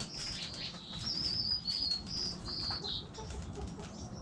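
Small songbirds chirping, with a high, quickly wavering warble from about one to three seconds in.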